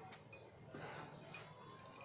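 Near silence: a quiet room with faint eating sounds, including a soft short hiss about a second in.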